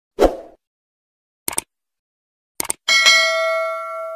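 Subscribe-button animation sound effects: a soft thump, two sharp mouse clicks about a second apart, then a bell ding that rings on past the end.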